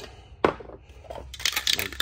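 Aerosol spray can of guitar lacquer being handled and lifted off a workbench: one sharp knock about half a second in, then faint scattered metallic clicks.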